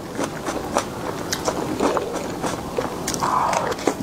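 Close-miked mouth sounds of a person eating soft layered cream cake from a spoon: wet smacking and many short, sharp clicks as the cake is taken in and chewed.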